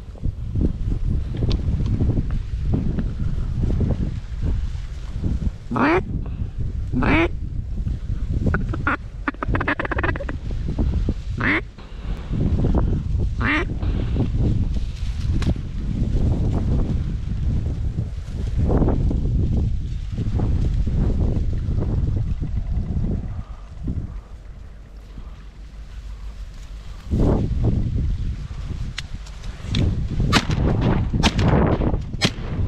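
Ducks quacking: a handful of separate calls in the first half, over a loud, steady low rumble of wind on the microphone.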